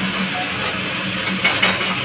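A ladle stirring and scraping in a metal pan on a gas stove, with a few metallic clicks about a second and a half in, over a steady mechanical whirr.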